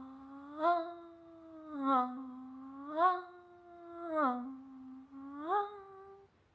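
A woman humming one continuous note that snaps up or down to a slightly different pitch about once a second, five times, each quick slide marked by a sharp swell in loudness. It is a vocal demonstration of a staccato articulation, the glide between notes made extremely fast.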